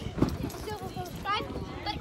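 Feet landing on a trampoline mat, a series of dull thumps as children bounce. Short high-pitched child's calls come in near the end.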